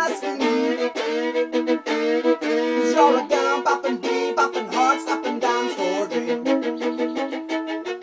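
Fiddle playing a lively instrumental break, with quick, short bow strokes and fast-changing notes.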